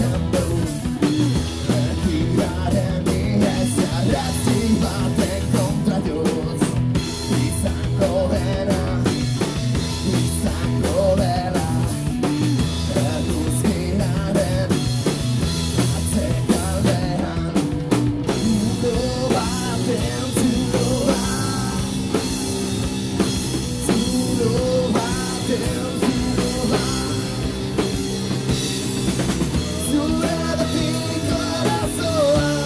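Live rock band playing: electric guitar, bass guitar and drum kit with cymbals, loud and unbroken.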